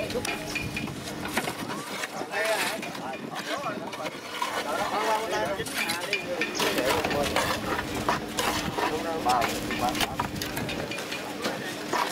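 Several people talking at once in the background, with scattered short knocks and clicks and a faint steady hum.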